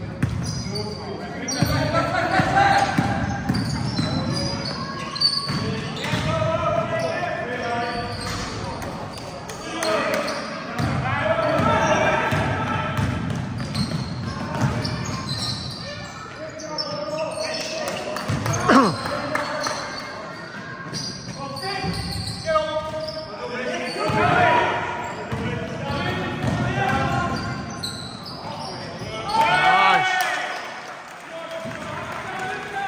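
Basketball game in a sports hall: the ball bouncing on the wooden court and players' and bench voices calling out, echoing in the large hall.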